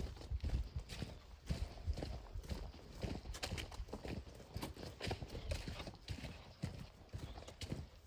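Footsteps walking over a path laid with landscape fabric and wooden boards, a steady run of irregular knocks.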